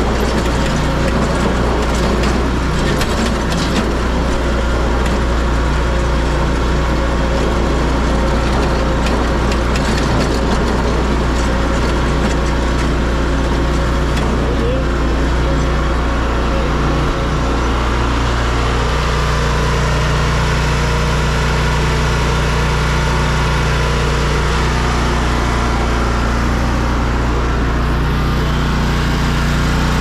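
Toro zero-turn mower's engine running steadily at a constant level, its note shifting slightly a little past halfway.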